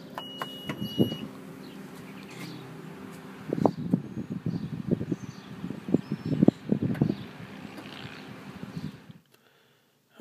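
Power tailgate of a 2013 Acura RDX in operation: a short high beep at the start, then a steady motor hum as the gate moves. Several knocks and thumps come in the middle, and the sound cuts off just before the end.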